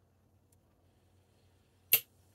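Near silence, then a single sharp snap near the end as the blade of a Great Eastern Cutlery #36 slipjoint pocket knife closes under its backspring. The crisp snap shows a strong 'walk and talk'.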